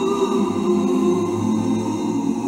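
Choir singing slow, sustained chords as background music.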